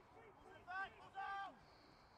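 Distant shouted calls across an open rugby pitch: two short, high calls, one just under a second in and a slightly longer one just after, the second falling in pitch at its end, over faint far-off voices.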